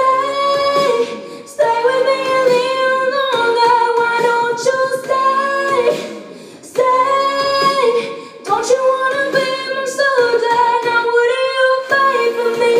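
A female singer singing into a handheld microphone, long held notes broken by short pauses between phrases.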